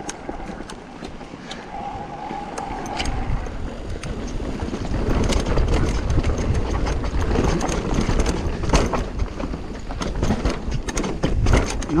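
Mountain bike on Specialized Cannibal downhill tyres riding down a dry, dusty dirt trail: tyres rolling over dirt and rocks, chain and frame rattling in quick clicks, and wind buffeting the helmet camera. It gets louder from about five seconds in as the bike picks up speed.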